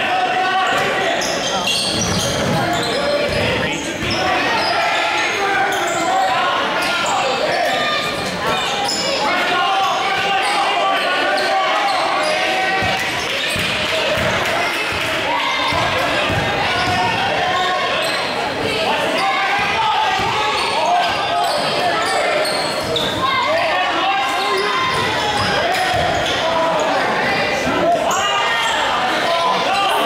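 A basketball bouncing on a hardwood gym floor during live play, under constant voices of players and spectators, echoing in a large gym.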